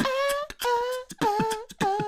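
A cappella theme tune: a young male voice singing 'da-da-da' in four held notes, with beatboxed clicks between them.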